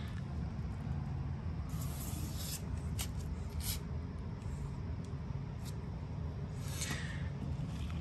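Low steady background rumble with a few soft brushing sounds and a light tick, a hand moving over the wallpaper seam.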